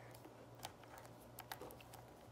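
Near silence broken by a few faint, short clicks and taps of a plastic dinosaur toy figure being handled.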